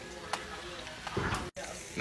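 Steaks sizzling in melted butter in a cast-iron skillet over hot coals, a steady frying hiss that cuts out for an instant about one and a half seconds in.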